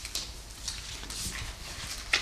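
Quiet room pause with low room noise and a few faint, short clicks, the clearest just after the start and about a second in.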